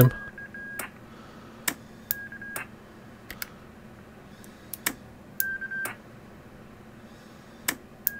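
Short single-pitch electronic roger beeps from a CB radio's adjustable K-tone beep board. They sound three times, spaced by sharp clicks, while the board's trimmer is set for speed and pitch.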